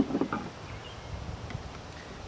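A sharp knock, then a few short handling sounds as a hand tool is taken up and set on the ridge reamer's centre bolt. A faint click follows about a second and a half in, over low steady outdoor background.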